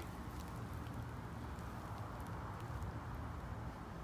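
Quiet, steady outdoor background noise with a low hum and a few faint ticks.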